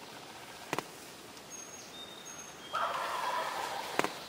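Wild turkey gobbler gobbling from its roost: one rattling gobble of about a second, starting near three seconds in. A single sharp click comes just before the one-second mark.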